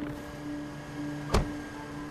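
A car door shutting with a single solid thud about a second and a half in, over soft, sustained background music.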